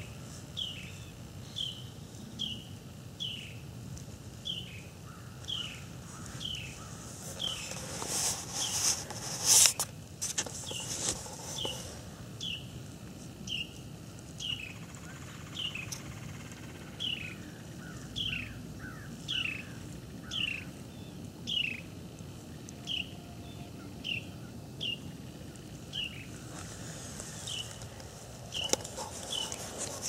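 A bird calling over and over in short down-slurred chirps, roughly one a second, over faint steady outdoor ambience. A brief louder rush of noise comes about eight to ten seconds in.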